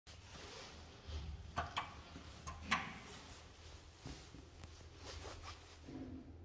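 A scattering of short, sharp clicks and knocks over a faint steady low hum. Among them is the press of a lift's landing call button, which lights up blue; the loudest knock comes a little under halfway through.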